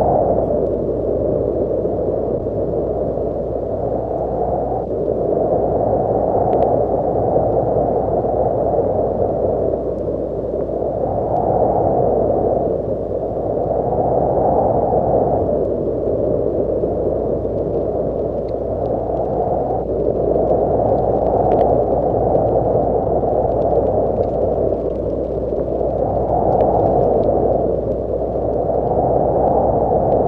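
Wind sound effect: a steady, low, dull rush of wind that swells and eases every few seconds.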